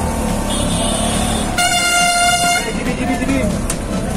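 A vehicle horn sounds one steady blast of about a second near the middle, over the continuous engine rumble and street traffic heard from inside a moving auto-rickshaw.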